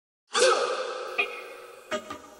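Intro stinger of a podcast opening: a sudden sustained pitched sound that fades over about a second and a half, with a short sharp hit about a second in and another at the end.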